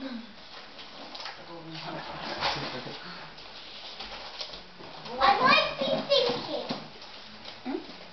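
A child's voice calling out briefly about five seconds in, high and bending in pitch, over quiet room sounds.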